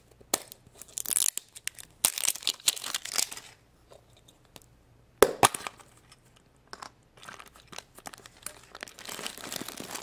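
A plastic surprise ball being opened by hand: its sticker seal torn off with ripping and crunching sounds, then one sharp snap about halfway through, the loudest sound, as the plastic halves come apart. Near the end comes the crinkling of the paper flyer and wrapping from inside.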